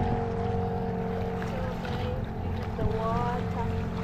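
A boat's engine running at a steady drone, with water splashing and rushing along the wooden hull as the boat moves through choppy water.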